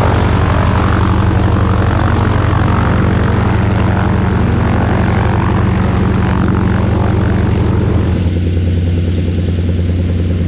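Noorduyn Norseman's Pratt & Whitney R-1340 nine-cylinder radial engine and propeller running steadily, then about eight seconds in the sound drops to a lower, duller engine note with less high end.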